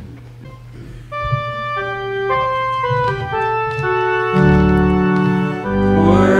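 Organ playing the introduction to the sung Gospel Acclamation. It comes in about a second in with held notes that build into chords, and deep bass notes join after about four seconds.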